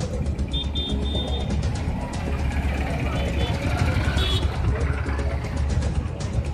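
Background music with a steady beat, mixed over street noise of vehicles and a crowd's voices.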